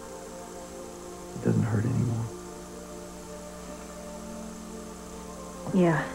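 Soft background music holding a sustained chord, with a brief voice sound about a second and a half in and another just at the end.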